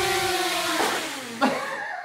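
DJI Mavic Air quadcopter's propellers whining at a steady pitch as it descends and touches down, then its motors spin down, the pitch falling away about a second in.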